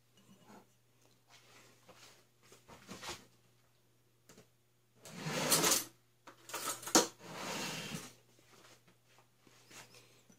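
Kitchen handling sounds: a few faint clicks, then two short scraping, sliding noises about five and seven seconds in, with a sharp click between them.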